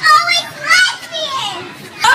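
High-pitched, excited girls' voices exclaiming in about three short bursts, with no clear words.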